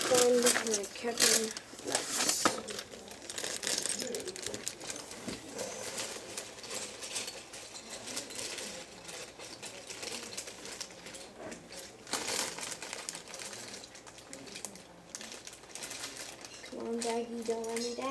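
Rummaging through small hard plastic pieces: a dense run of irregular clicks and rustling, busiest in the first few seconds and again about twelve seconds in.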